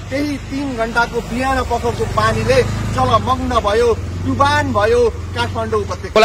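A man speaking continuously, over a steady low rumble.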